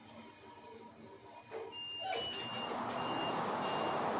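Hitachi passenger lift arriving at a floor: its doors slide open about halfway through with a rising rush of noise, while a short high beep repeats about twice a second.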